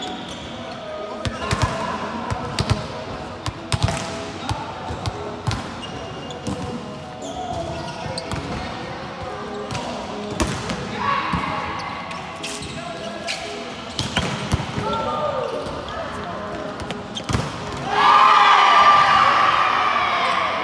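Indoor volleyball play: repeated sharp smacks of the ball off players' hands and arms, mixed with players' shouted calls, with a louder burst of shouting near the end.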